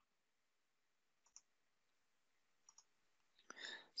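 Near silence with two faint computer mouse double-clicks, about a second and a half apart.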